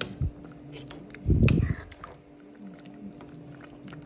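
A spoon stirring and scooping chicken soup in a metal pot, with small clicks and one short, low thump about a second and a half in.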